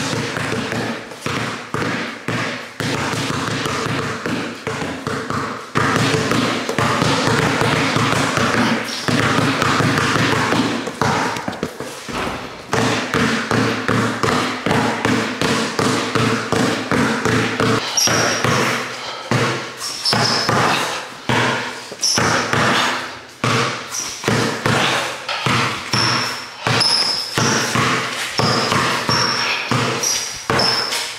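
Two basketballs dribbled at once on a concrete garage floor, a quick, continuous run of bounces.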